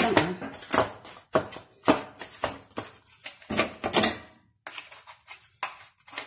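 A kitchen knife scraping and tapping around the inside edge of a thin aluminium foil cup, with the foil crinkling, as a set disc of homemade soap is worked loose. The clicks and scrapes are irregular, with a short pause about three-quarters of the way through.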